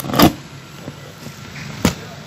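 Scissors cutting the wire binding a cardboard box: a louder crunch about a quarter second in and a short sharp snip near the end, over a steady low hum.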